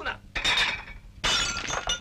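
Plates smashed on the floor: two loud crashes in quick succession, the second with the ringing of the shards.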